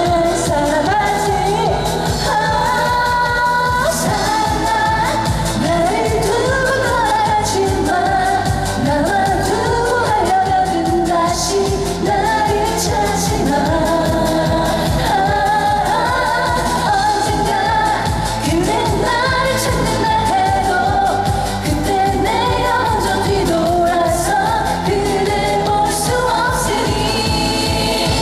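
A woman singing a Korean song live into a handheld microphone over a backing track with a steady dance beat, amplified through the stage speakers.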